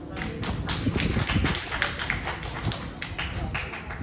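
Audience clapping, individual claps heard distinctly, as applause at the end of a piano piece.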